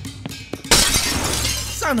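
Glass shattering as a comedy sound effect: a sudden crash about two-thirds of a second in that trails off over about a second. It plays over the song's steady bass.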